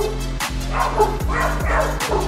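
A small dog barking and yipping in short bursts at a cougar, heard over background electronic music with a steady beat.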